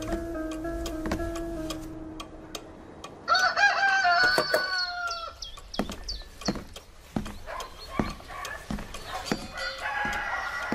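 A rooster crows once, a single call of about a second and a half, about three seconds in, after soft music fades. It is followed by short, scattered clucks and knocks.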